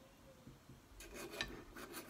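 Knife and fork cutting steak on a plate: a run of short scraping strokes starting about a second in.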